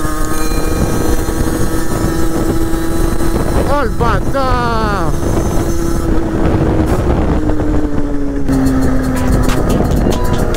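50cc two-stroke motorbike engine running steadily under way, with wind buffeting the microphone. About four seconds in, the revs sweep sharply up and down several times in quick succession.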